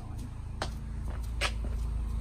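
Mini Cooper S R56's turbocharged 1.6-litre four-cylinder idling steadily while it warms up, with two footsteps on concrete about half a second and a second and a half in.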